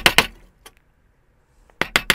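A chisel being tapped with a mallet in quick, even light blows, about seven a second, chopping out a housing in a wooden post. The tapping stops about half a second in and starts again near the end.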